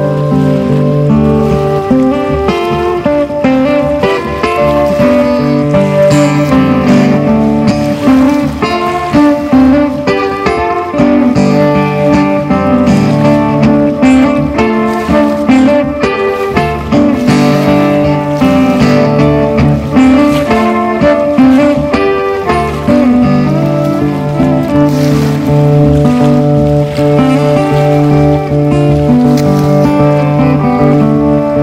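Acoustic guitar and fiddle playing together live, a Celtic-tinged Americana tune with the bowed fiddle carrying long sustained notes over the guitar.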